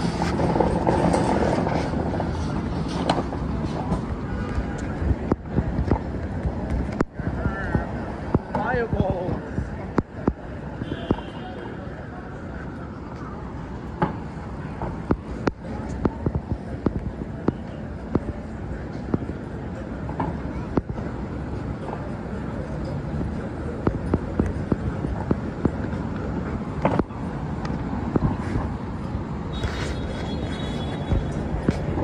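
Busy city street ambience: a steady wash of traffic noise with voices of passersby talking, strongest in the first couple of seconds.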